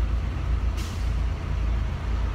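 Steady low rumble inside a car cabin, with a brief hiss a little under a second in.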